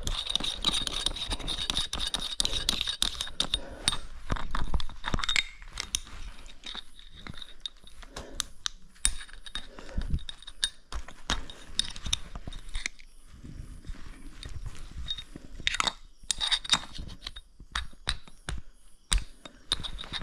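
Handling noise from a metal flashlight being fiddled with while it keeps failing: irregular clicks, knocks, scrapes and small rattles from hands on the metal body and nearby gear.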